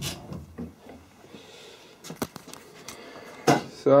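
A few light clicks and knocks from hands working a quick-release woodworking vise with a wooden jaw, the loudest one near the end.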